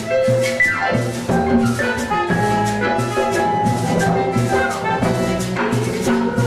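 Live band playing a Latin-style song, with drum kit and hand percussion keeping a steady beat under sustained keyboard and horn notes, and a quick falling run about a second in.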